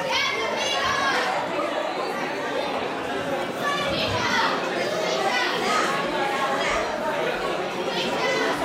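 Audience chatter in a large hall: many overlapping voices, children's among them, talking and calling out at once.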